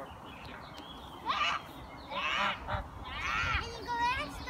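Domestic geese honking, three loud calls about a second apart.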